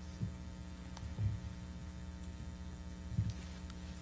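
Steady electrical mains hum, with a few faint low thumps.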